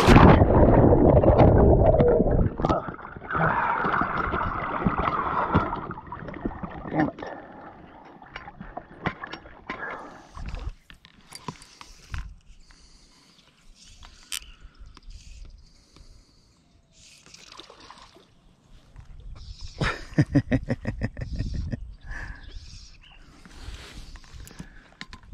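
Water sloshing and gurgling right at the microphone for the first few seconds, with the camera held at or under the river surface. Then a quieter stretch of small knocks and handling sounds, and a man laughing near the end.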